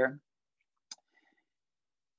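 A single short click from a computer, about a second in, as the talk's slide is advanced. Otherwise quiet after a spoken word ends.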